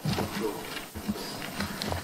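Sheets of paper rustling and shuffling close to a desk microphone as a stack of documents is leafed through.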